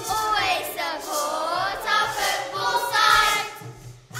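A group of children singing a pop-style song together over a backing track, in phrases about a second long.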